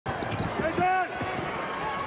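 A basketball being dribbled on a hardwood court, a series of short bounces, with a brief voice about a second in.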